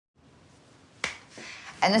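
A single sharp click about a second in, followed by a short breathy sound, then a woman starts speaking right at the end.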